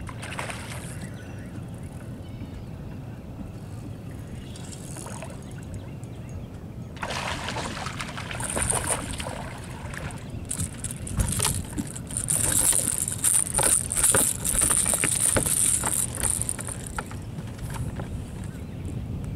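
Baitcasting fishing reel giving a high-pitched clicking whir from about seven seconds in, with sharp knocks among it, while a hooked bass is fought to the boat. Under it runs a steady low rumble of water and wind.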